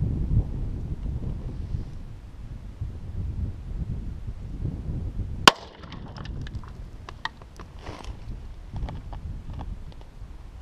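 A single shot from a .38 Special revolver about five and a half seconds in, fired into a stack of boards, over wind noise on the microphone. A run of light clicks and ticks follows.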